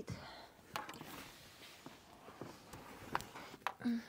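Faint rustling with a few sharp clicks and knocks, the loudest near the end: hands working at a car's rear seat cushion as it is being freed for removal.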